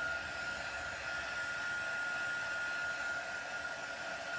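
Stampin' Up! embossing heat tool blowing steadily, a hiss with a constant high whine over it, as it melts white embossing powder on cardstock.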